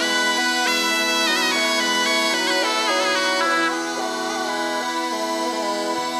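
Traditional southern Italian bagpipe music, zampogna style: an ornamented melody played over a steady drone. The melody thins out and the music gets a little quieter just past halfway.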